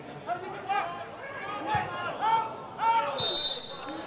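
Referee's whistle blowing full time: a steady, shrill blast starting about three seconds in. Before it, voices call out across the ground.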